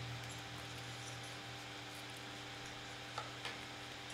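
Quiet room tone with a steady low hum, and a few faint snips of small curved nail scissors cutting egg-box cardboard, two of them close together about three seconds in.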